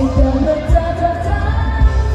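Live Thai pop song played over a concert PA: women singing a melody over a steady, heavy kick-drum beat with boomy bass.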